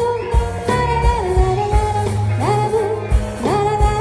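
Live band music: a female singer holds long notes, sliding up into each new phrase, over drums, bass and electric guitars.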